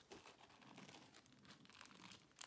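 Faint crinkling and crackling of a small plastic packet of hair ties being handled, a quick run of soft crackles.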